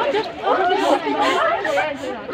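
Chatter of several young voices talking over one another.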